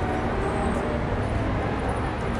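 Steady low rumble of road traffic with no distinct events.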